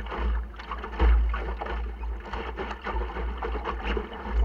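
Water slapping and splashing irregularly against the hull of a small Optimist sailing dinghy under sail, heard from inside the boat, with wind buffeting the microphone as a fluctuating low rumble.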